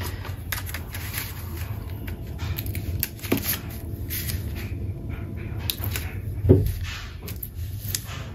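Paper and cardstock being handled and pressed flat on a cutting mat, with light rustles and scattered soft clicks as a bone folder is run along the edge of a taped paper pocket. There is one louder brief thump about six and a half seconds in.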